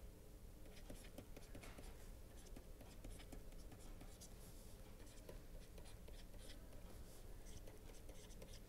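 Faint scratching and tapping of a stylus writing on a pen tablet, over near-silent room tone.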